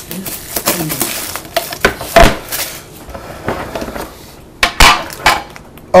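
Trading card packs and a card box being handled on a table: rustling with several sharp knocks and clinks, the loudest about two seconds in and near the end.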